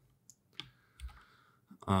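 A few faint, irregularly spaced clicks of computer keyboard keys being typed.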